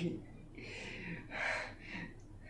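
A young man's soft, breathy laughter: two short airy chuckles through the breath, without voice.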